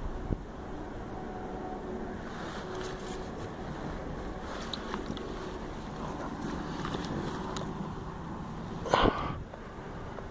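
Steady wind rumble on the microphone, with one brief louder burst of noise about nine seconds in.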